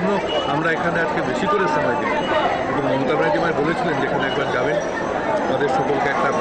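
A man talking into press microphones, with a crowd of people chattering behind him.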